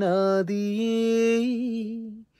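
A man singing a slow melody unaccompanied, with a long held note about half a second in that wavers into a small ornament near the end.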